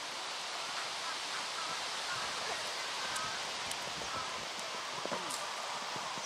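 Muffled hoofbeats of a horse cantering on a sand arena, under a steady outdoor hiss, with faint voices of onlookers.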